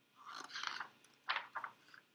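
Paper rustling as a hardcover picture book's page is gripped and turned, in two short rustles.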